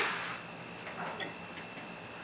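A light switch clicking once, about a second in, in a quiet room with a faint steady high whine.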